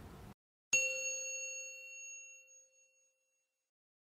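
Faint room noise cuts off to dead silence, then a single bell-like chime strikes under a second in and rings out, fading over about two seconds: the chime of a closing logo.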